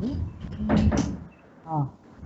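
A man's voice talking in short phrases, with a brief noisy sound about three-quarters of a second in.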